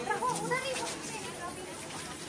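Chatter of children and adults in a gathered crowd, several voices talking at once, busiest in the first second.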